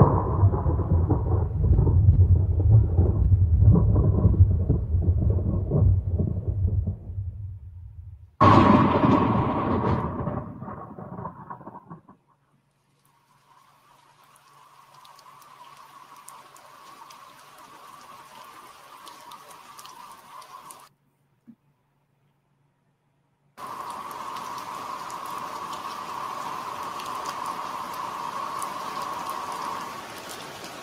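Soundtrack of an LED light-installation video: a deep thunder-like rumble for about eight seconds, then a sudden brighter noise that fades away. After short silences, a steady rain-like hiss.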